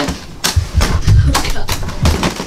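A run of knocks and low thumps, several in quick succession from about half a second in to near the end.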